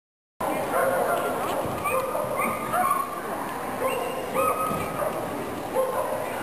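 Border collie barking repeatedly while running an agility course, with a person's voice alongside; the sound cuts in abruptly about half a second in.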